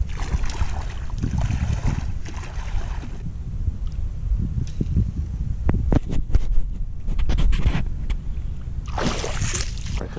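Wind rumbling on the microphone, with water sloshing around legs wading through shallow water, a few sharp clicks, and a brief louder rush of noise near the end.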